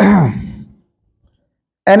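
A man's voice at the start, a short sound that falls in pitch and trails off within about half a second. Then a pause, and his speech resumes just before the end.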